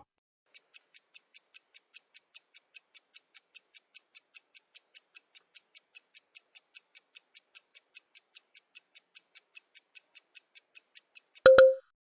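Ticking-clock sound effect counting down the writing time: quick, even ticks, about four or five a second, ending near the end with a short low beep.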